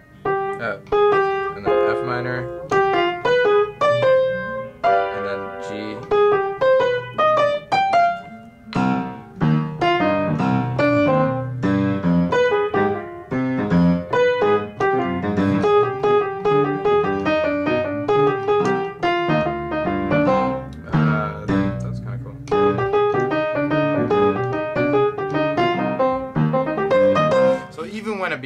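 Piano played with both hands: an improvised right-hand line of quick note runs over left-hand chords, drawn from the C harmonic minor scale and approaching the chord tones from above.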